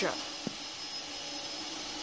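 Vacuum cleaner running steadily in the background, an even drone with a faint high whine. A single short click comes about half a second in.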